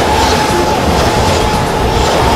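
Train rolling over the track, heard close to the rails: a loud, steady rumble and rattle of wheels on rail.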